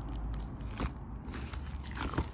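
Irregular crinkling and crackling of plastic wrapping as a packaged framed cross-stitch piece is handled, with short scrapes among the crackles.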